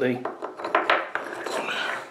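White ceramic sharpening rods clinking against each other and being slotted into the holes of a wooden base: a few light clicks with some scraping.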